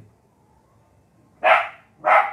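A dog barks once, short and loud, about one and a half seconds in, after a near-silent pause.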